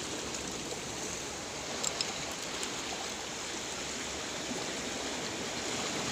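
Steady wash of small sea waves breaking on rocks, with a couple of faint clicks about two seconds in.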